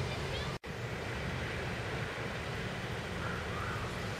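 Steady low outdoor rumble, such as wind on the microphone, with a few faint high chirps near the end; the sound drops out completely for a split second under a second in.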